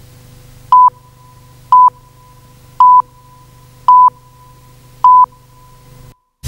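Five short, loud electronic beeps at one steady pitch, evenly spaced about a second apart, over a faint steady low hum.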